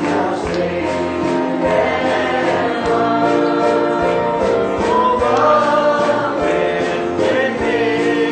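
A congregation singing a hymn together.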